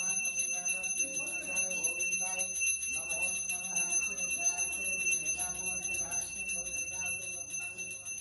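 Brass temple hand bell rung rapidly and without pause during worship at the shrine, its ringing tones holding steady throughout.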